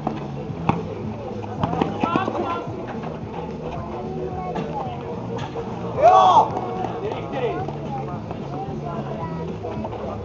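Streetball game sounds over background music with a steady low beat: players' voices call out, loudest in a shout about six seconds in, and a few sharp knocks sound in the first two seconds.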